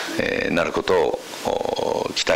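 A man speaking Japanese into a microphone, ending on a drawn-out, buzzy hesitation sound.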